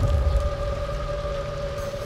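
A steady low rumble under a faint held tone: an ambient drone in the cartoon's sound design.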